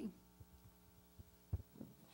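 Steady low electrical hum from the sound system, with a few soft thumps of a handheld microphone being handled and set down on a table, the clearest about one and a half seconds in.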